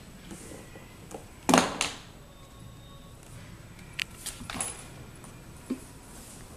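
A golden retriever puppy playing with a plastic teething ring: one loud clatter of the toy about a second and a half in, then a few light clicks as she moves off across the hardwood floor.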